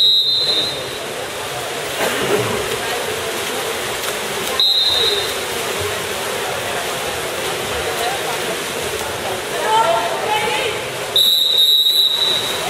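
Water polo referee's whistle blown three times in short blasts: at the start, about halfway through, and near the end. Under the whistles runs a steady wash of splashing and voices in the pool hall.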